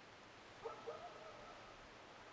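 Faint animal call over quiet outdoor ambience: two quick notes followed by a held pitched tone lasting about a second.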